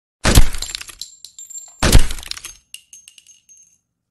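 Glass smashing twice, about a second and a half apart, each crash followed by clinking shards that die away.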